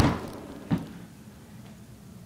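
Two dull thumps about three quarters of a second apart, the first the louder and fading over about half a second, over a low steady room hum.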